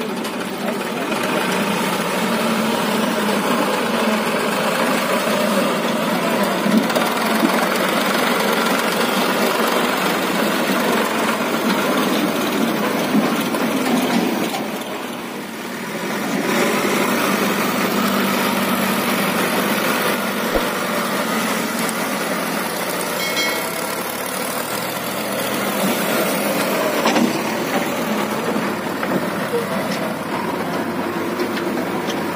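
Diesel engines of farm tractors and a backhoe loader running steadily. The noise dips briefly about halfway through, then goes on.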